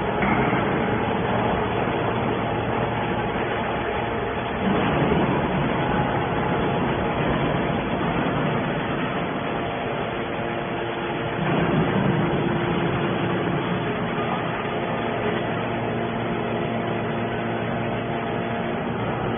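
Hydraulic scrap metal baler running: its pump and motor give a steady mechanical hum with a few held tones. The sound swells about five seconds in and again near twelve seconds, as the load on the hydraulics changes.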